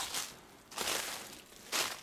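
Footsteps on frosty leaf litter, a step roughly every second.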